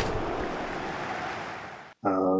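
A rushing, breath- or wind-like noise on a microphone that starts with a click, holds steady, fades, and then cuts off suddenly.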